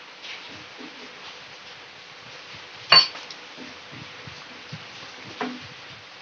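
A steel spoon stirring thickening custard milk in a steel pot, with one sharp metal clink of the spoon against the pot about halfway through and a softer clink near the end.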